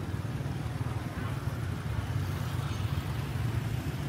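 Steady low hum of motorbike engines in street traffic, heard while riding along among other scooters, with road noise.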